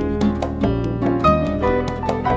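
Instrumental acoustic guitar and piano duo music: quick plucked melody notes over sustained low bass notes.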